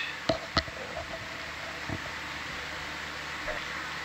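Steady hiss and low hum of equipment and air handling in a ship's ROV control room, with two sharp clicks within the first second and a faint knock about two seconds in.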